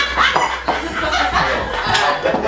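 People laughing in short repeated bursts.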